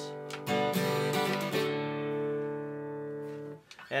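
Acoustic guitar strummed as a level-check sample: a couple of quick strums, then a chord about a second and a half in that rings out for about two seconds before stopping shortly before the end.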